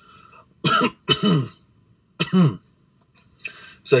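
A man clearing his throat: three short bursts within the first two and a half seconds.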